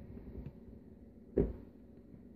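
A single short knock a little past the middle, the Vitamix blender container's plastic lid being worked off; otherwise quiet.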